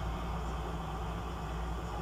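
A steady low hum in the room, even throughout, with no distinct event over it.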